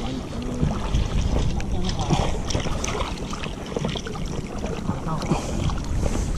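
Wind buffeting the microphone over water lapping and splashing at the side of a small boat, where a mesh keep net of fish is being worked in the water.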